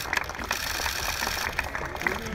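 Many camera shutters clicking in rapid, overlapping bursts over a steady crowd hubbub.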